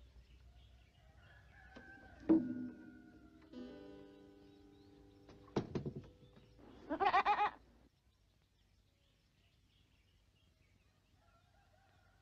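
Strings of an acoustic guitar twang and ring out, unplayed, as a goat jostles the instrument. There are two sharp knocks a few seconds apart, each followed by ringing strings. Then the goat bleats once, a quavering call of about a second.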